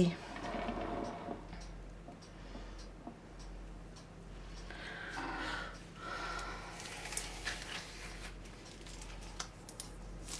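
Quiet handling noises as a wet, paint-covered canvas is tilted and moved by hand on a round board, with scattered light clicks, over a steady low electrical hum.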